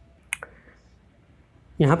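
A pause in speech: one short, sharp click about a third of a second in, then quiet room tone until a man's voice resumes near the end.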